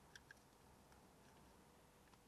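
Near silence: room tone, with a couple of faint clicks in the first half second from a small wiring plug being pushed into the steering-wheel hub's circuit board.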